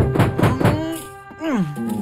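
Cartoon soundtrack with music: a quick run of sharp thuds in the first second, then one falling pitch glide about one and a half seconds in.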